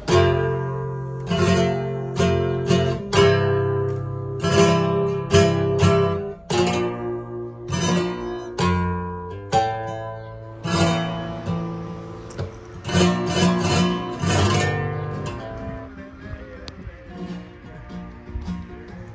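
Flamenco guitar playing: sharp strummed chords alternating with ringing notes, the strokes coming in quick clusters at times, dying down over the last couple of seconds.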